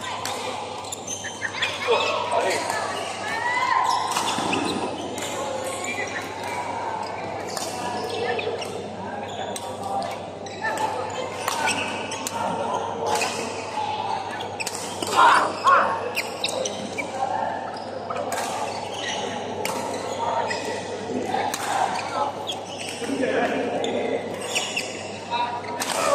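Badminton play in a large hall: rackets striking the shuttlecock in sharp clicks, repeated irregularly throughout, over players' voices calling from around the courts.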